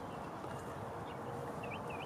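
Steady outdoor background noise with a few faint, short high chirps of a small bird in the second half.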